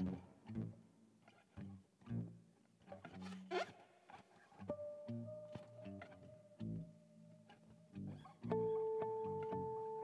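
Quiet acoustic guitar duet: sparse plucked notes, with a note sliding upward about three and a half seconds in. Then long held tones set up through a fretless acoustic guitar's effects pedals, and a steadier, louder drone comes in near the end.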